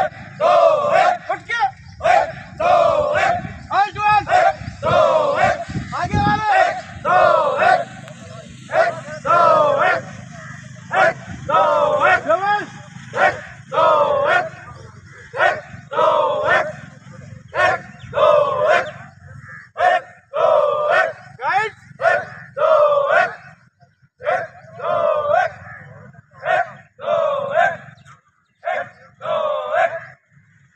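Marching drill cadence: short, loud shouted calls repeated about once a second in time with the step, with a few brief pauses near the end.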